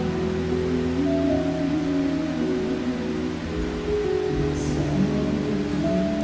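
Slow live concert music with long held chords that change about four seconds in.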